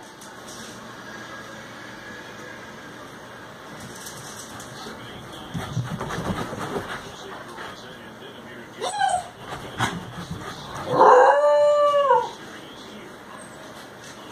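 Small dog howling. A short rising yelp comes about nine seconds in, then one long howl that rises and falls for about a second near the end.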